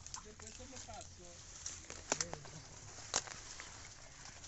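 Footsteps pushing through dense brush, with dry leaves and twigs crackling and snapping underfoot. The sharpest snaps come about two seconds in and again just after three seconds.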